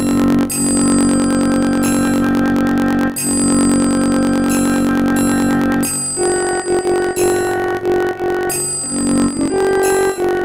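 Notation-app playback of the raag Yaman lakshan geet melody in a synthesized single-line voice: two long held notes, then from about six seconds in a run of shorter notes.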